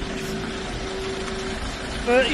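Steady engine and road noise from trucks driving, with one constant hum running through it.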